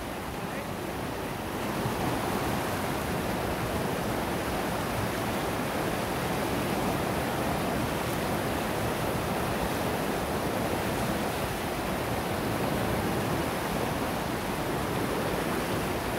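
A river in spate, running high and fast after three days of persistent rain, with water rushing and churning over turbulent whitewater in a steady noise that grows a little louder about a second and a half in.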